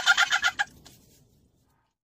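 A high, rapid cackling laugh of quick 'ha-ha-ha' pulses, about ten a second, trailing off within the first second or so.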